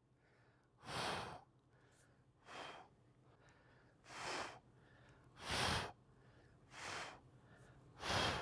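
A man breathing hard while doing dumbbell curls, heard close to the microphone: one short, forceful breath about every second and a half, in time with the reps.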